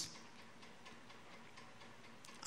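Near silence: a pause in a man's talk, with only faint steady room noise through the microphone.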